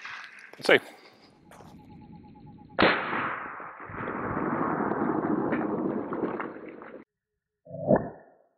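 Rifle shots from a suppressed 5.56 carbine with a 10.5-inch barrel firing M193: a single sharp crack under a second in. About three seconds in comes a second sharp crack, whose long rushing tail runs about four seconds and then cuts off abruptly.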